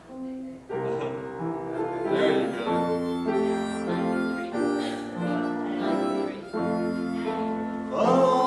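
Instrumental music playing held chords, starting about a second in: the introduction to a hymn that the congregation sings next.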